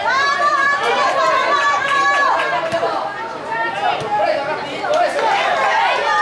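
Several voices shouting and calling out over one another without a break, as players and onlookers do during a football match.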